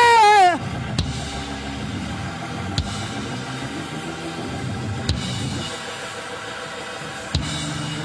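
A man's voice holds the end of a sung 'hallelujah' with vibrato, cutting off about half a second in, and live church band accompaniment carries on softly: sustained chords with four scattered drum-kit hits.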